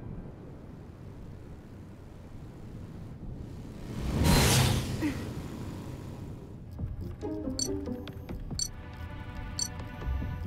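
Cartoon soundtrack: low rumbling background music, with a loud rushing sound effect about four seconds in. Near the end electronic music comes in with sharp beeps about once a second.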